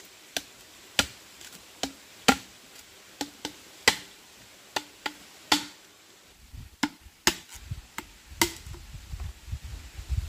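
Machete blade striking a short section of green bamboo tube held in the hand: a string of sharp, irregular chopping knocks, one or two a second.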